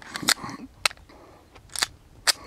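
A few sharp, separate mechanical clicks from a CZ 75 D PCR pistol being handled, with a quick double click near the end.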